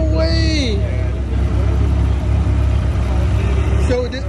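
Supercharged Ford F-150 engine idling with a steady low rumble. A person's voice is heard briefly over it in the first second.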